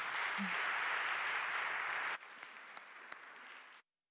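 Audience applauding, loud at first, then dropping abruptly to thinner, scattered clapping about two seconds in, and cutting off suddenly near the end.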